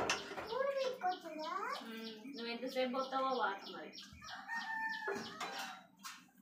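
Domestic chickens calling: a rooster crowing, with a quick run of short, high peeps through most of the stretch.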